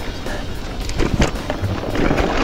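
Background music over the rumble and rattle of an e-mountain bike's tyres rolling on a rough dirt-and-rock trail, with a few sharp knocks about a second in.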